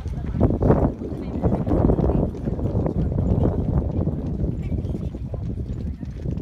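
People's voices close by, over a quick run of sharp clattering steps.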